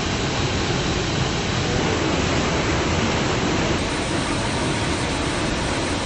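Steady rushing roar of a waterfall cascading over rocks into a pool.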